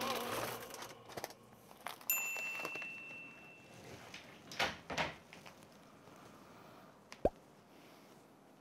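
Music with singing fades out, then a short, clear high ding rings for about a second and a half. A few light knocks follow, and a sharp thump near the end, as food containers are handled at a kitchen counter.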